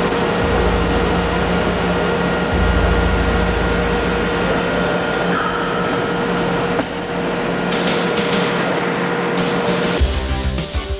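Steady, loud factory machinery noise with a constant hum and a low rumble, likely under background music. A run of sharp clicks comes near the end.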